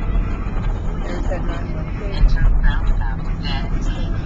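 Steady low road and engine rumble from inside a moving car's cabin, with faint talk over it about a second in.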